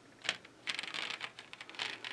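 A brief click, then from about two thirds of a second in a fast, uneven run of small hard clicks and clatters, like plastic pieces rattling.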